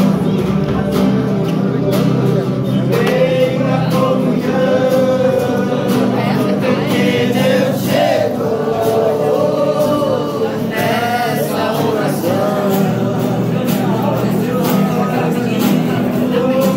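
A group of men and women singing a gospel worship song together, accompanied by strummed acoustic guitars, steady throughout.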